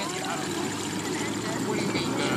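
Pickup truck engine running in a steady drone under load as it pulls a submerged car out of the water by a chain, with faint voices behind it.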